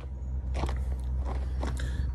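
Steady low rumble of wind buffeting the microphone, with scattered crunches and scrapes.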